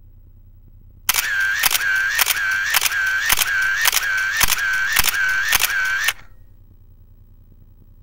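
Camera shutter firing repeatedly with a motor-drive film advance, about two frames a second, each sharp click followed by a short whine of the winder. It starts about a second in and cuts off after about five seconds.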